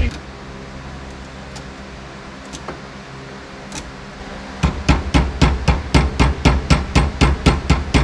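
Small hammer tapping quickly on a braided-hose AN fuel fitting clamped in a bench vise, about six light blows a second, starting a little past halfway. It is driving the fitting's insert in between the hose and its steel braiding. Before the tapping there is only a low steady hum and a few faint clicks.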